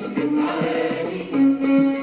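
Moroccan patriotic song: voices singing together over instrumental backing, with a long held note starting about a second and a half in.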